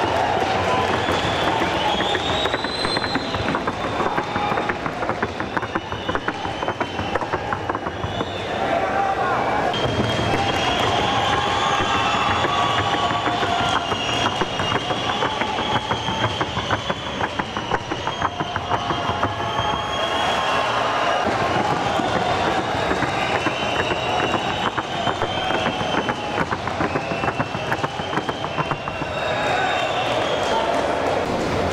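Hooves of a Colombian trote y galope horse trotting on the arena, a quick, even clatter of hoofbeats that runs without a break, with voices behind it.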